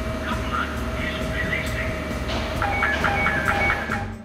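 Hill AWS coupler warning sounder alarming while the quick coupler operates, the sign that the coupler is opening or closing. It gives a steady tone, then from about two and a half seconds a rapid pulsing beep of about five a second, over a low steady machine hum.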